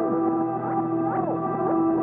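Ambient synth music: held chords with swooping pitch glides that rise and fall, and no drums.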